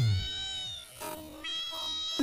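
Electronically processed cartoon audio: a fast downward pitch sweep, then a high, wavering tone that sounds like a meow, held for about a second. A second sustained high tone follows in the latter half.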